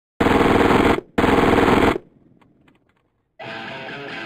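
Two bursts of automatic fire from a submachine gun, each just under a second long with a brief gap between them. Music starts near the end.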